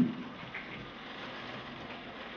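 A quiet pause: faint, steady room noise and hiss in a classroom, with no distinct sound events.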